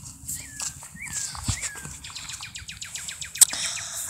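An animal giving three short, high calls about half a second apart, each sliding up and then down in pitch, followed by a quick run of light ticks.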